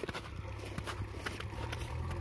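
A JCB backhoe loader's diesel engine running as a steady low hum, a little louder near the end. Over it comes a string of short, sharp clicks or crunches, several a second.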